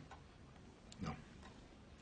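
Pendulum clock ticking faintly in a quiet room, with a short, quiet spoken 'No' about a second in.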